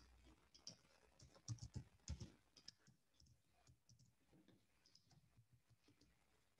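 Faint computer keyboard keystrokes and clicks, bunched in the first three seconds, then sparse.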